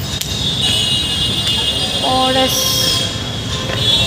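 Outdoor street ambience: a low traffic rumble, a steady high-pitched whine that drops out for a moment past the middle and returns near the end, and a short flat toot about two seconds in.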